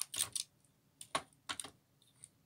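Small hard clicks and taps of model locomotives being handled and set down on a workbench, knocking against each other and the bench. They come in quick clusters of two or three.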